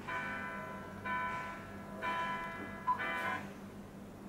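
Music streamed over Bluetooth playing from an Android car-stereo head unit: four bell-like struck notes, about a second apart, each ringing and fading.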